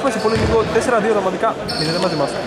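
People's voices talking in a basketball gym hall.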